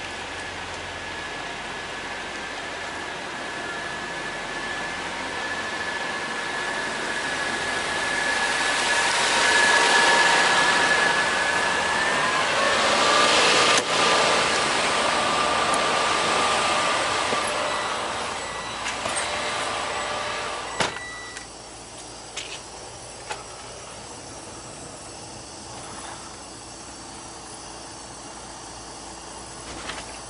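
Steady rushing engine noise with a couple of whining tones from an idling diesel semi-truck and the rain around it, growing louder toward the middle. About 21 seconds in, the truck's cab door shuts with a sharp clunk, and the noise drops to a muffled hum inside the cab, with a few small clicks.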